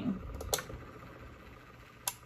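A few light, sharp clicks about half a second in, then a faint, steady low hum.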